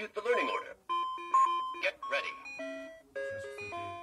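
Star Wars Clone Wars children's learning laptop playing its electronic start-up tune: simple beeping notes stepping from pitch to pitch, with a short warbling sound in the first second.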